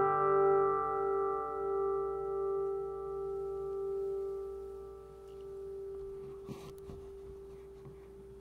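Final chord of a steel-string acoustic guitar ringing out and slowly fading, one string sustaining longest. About six and a half seconds in, a brief rustle and light knock.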